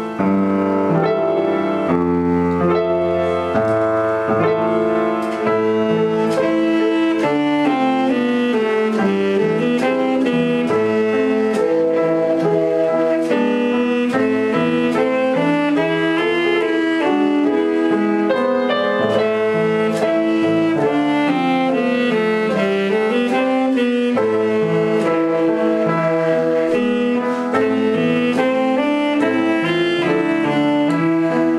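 Alto saxophone playing a legato melody with vibrato, accompanied by an upright piano.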